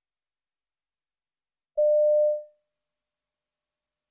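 A single electronic beep, one steady mid-pitched tone starting abruptly about two seconds in, held for about half a second and then fading out. It is the test's signal marking the start of a new listening extract.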